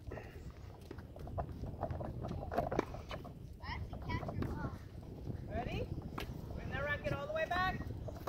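Tennis balls hit and bouncing on a hard court: scattered sharp knocks, the loudest about a third of the way in. Faint distant voices are heard in the second half.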